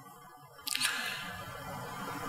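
A short pause in a man's speech: near-quiet, then about half a second in a soft breathy hiss close to the microphone starts suddenly and slowly fades.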